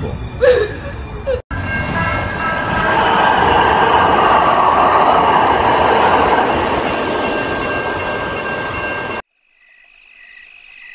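A train running past, a steady rumble with a faint high whine over it, swelling in the middle and cutting off suddenly near the end.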